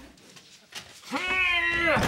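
Heavy metal vault door creaking open: one long, high squeal that starts about a second in, rises, holds and then drops away.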